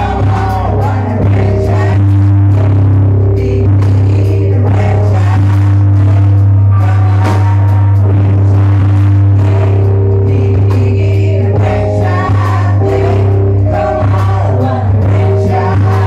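Live band: a woman singing over electric bass and drum kit, with the bass loudest in the mix.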